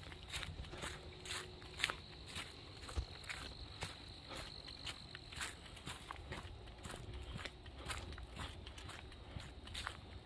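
Footsteps on a leaf-strewn dirt forest trail, about two steps a second. A steady, thin, high insect trill runs underneath.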